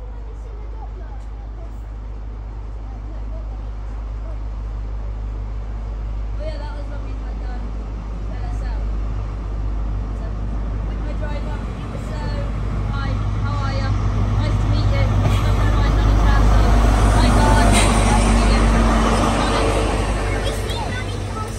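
A High Speed Train's Class 43 diesel power car running in along a station platform, its low engine hum growing steadily louder as it approaches and is loudest as it draws past, near the end, with a sharp click from the wheels on the rails.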